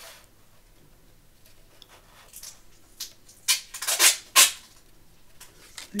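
Paper and a clear acetate sheet being handled and slid on a paper trimmer: a quiet stretch, then a quick cluster of rustles and scrapes about halfway through, with a couple of light ticks near the end.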